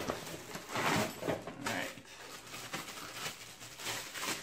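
Rustling and crinkling of plastic wrapping and a fabric tool bag as a bagged power tool is pulled out and handled, with a couple of louder rustles in the first two seconds.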